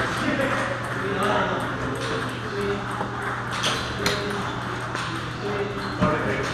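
Table tennis balls clicking off paddles and tables, a few sharp clicks about halfway through, over background chatter of people's voices and a steady low hum.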